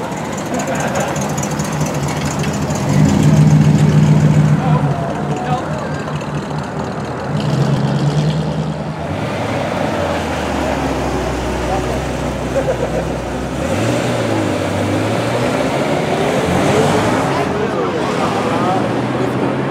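Several cars pulling away one after another at low speed, their engine notes swelling and fading; the loudest pass is about three to five seconds in. A Ferrari 348's V8 drones low as it passes, then revs up about fourteen seconds in, over people talking.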